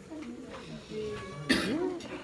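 A single loud cough close to the microphone about a second and a half in, over background chatter and music.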